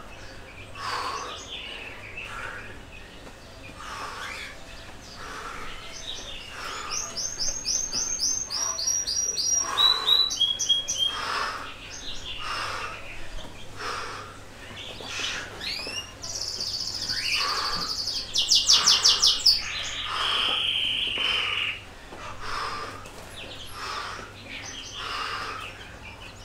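Songbirds chirping and singing, with several quick high trills and a loud buzzy rattling phrase about two-thirds of the way through. Under them runs a faint regular sound about once a second.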